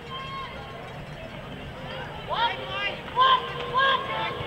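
Several short, high-pitched shouts from people at the game, starting about two seconds in, over a faint outdoor background.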